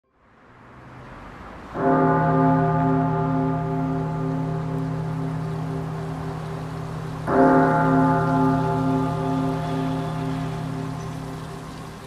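Opening music: a low, bell-like tone struck twice about five seconds apart, each ringing on with a slow pulsing as it fades, over a soft rain-like hiss.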